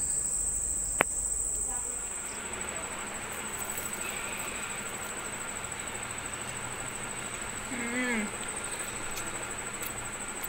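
Steady high-pitched chirring of crickets, with a single sharp click about a second in and a short hum from a person's voice near the end.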